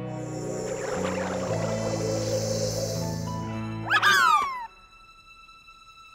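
Cartoon background music with sustained notes, then about four seconds in a short, loud, high-pitched squeaky chirp from a cartoon creature, sliding up and down in pitch. After it the music thins to a faint held tone.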